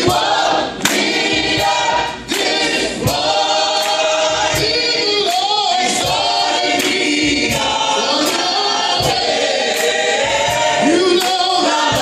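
A group of voices singing a gospel praise song together, with sharp claps keeping time about twice a second.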